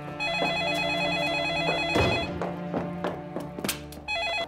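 Electronic desk telephone ringer (a TCL corded office phone) ringing with a fast warbling trill: one ring of about two seconds, then a pause before it starts again, the call still unanswered. Background music and a few light knocks run underneath.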